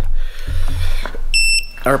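A low rumble, then a single short high-pitched electronic beep a little over a second in, lasting under half a second.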